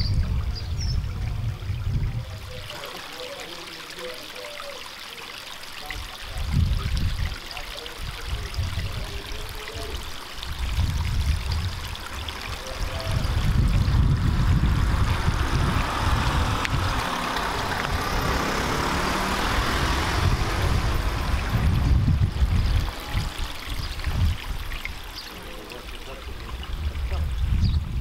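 Steady rushing noise with irregular low rumbles, louder through the second half.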